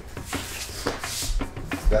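Heavy cotton martial-arts uniforms rustling and bodies shifting on tatami mats as a pinned partner is released and rises, with a few soft knocks.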